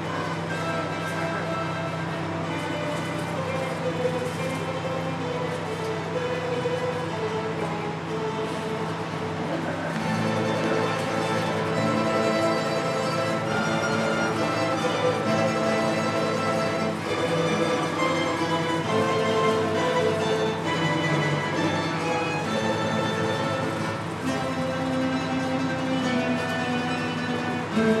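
Mandolin ensemble of mandolins, classical guitars and double bass playing a piece under a conductor, the plucked notes growing louder about ten seconds in. A steady low hum runs beneath the music.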